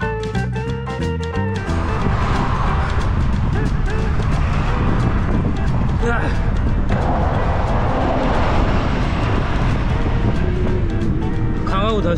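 Upbeat background music cuts off about two seconds in, giving way to steady wind rushing over the microphone and road noise while riding a bicycle along a road.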